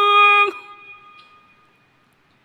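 A muezzin's amplified voice holding the long final note of a phrase of the adhan (Islamic call to prayer). It stops abruptly about half a second in, and the echo of the hall dies away over the next second.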